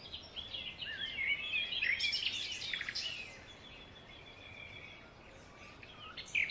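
A small songbird chirping: a run of quick, high twittering calls for the first three seconds or so, then a faint thin note that fades away.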